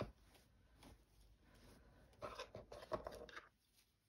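Faint rustling and brushing of linen fabric being handled and smoothed by hand, louder for about a second past the middle.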